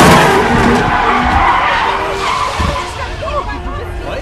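A city bus's brakes screeching and its tyres skidding as it stops hard. The sound is loudest at the start and fades over the next few seconds.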